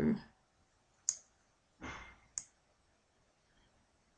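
Two sharp computer mouse clicks, about a second and two and a half seconds in, with a short soft rush of noise just before the second.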